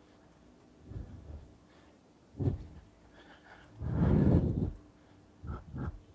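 A man's loud, heavy breaths and throat noises coming through a Skype video call: a short sharp one about two seconds in, a longer, louder one around four seconds, and two short ones near the end.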